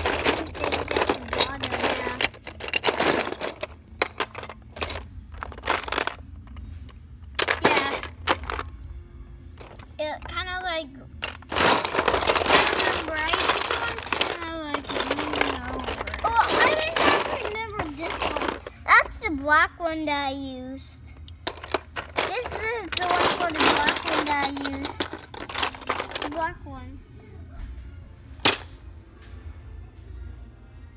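Beyblade parts, hard plastic and metal, clattering and clicking as they are rummaged through by hand, with a child's wordless voice sounds in between.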